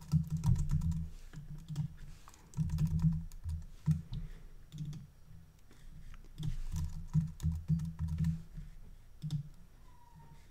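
Computer keyboard typing in several short runs of keystrokes, each key carrying a dull low thud, as short words are typed.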